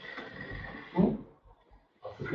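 A man's short questioning "hı?" about a second in, otherwise faint room noise.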